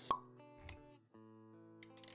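Animated-intro sound design: a sharp pop just after the start, a low thump a little later, then held music chords.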